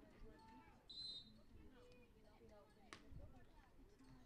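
A referee's whistle gives one short, high blast to authorise the serve. About two seconds later there is a single sharp slap of a hand striking a beach volleyball on the serve. Faint voices and a low wind rumble lie underneath.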